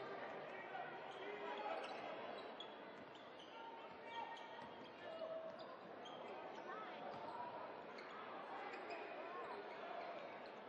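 Live basketball play in an echoing arena: the ball bouncing on the hardwood court, short sneaker squeaks, and the murmur of the crowd and players' voices.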